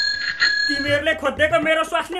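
A bright bell-like ding rings and fades at the start. About half a second in, a voice begins singing in Nepali with sustained, gliding notes.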